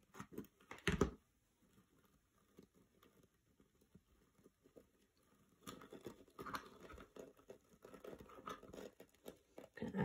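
Copper scouring pad crinkling and rustling as fingers squeeze and press it into shape, starting a little past halfway through. A knock about a second in.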